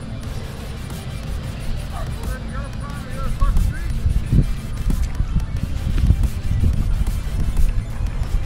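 Wind buffeting the microphone, an uneven low rumble, with a faint distant voice about two to three seconds in.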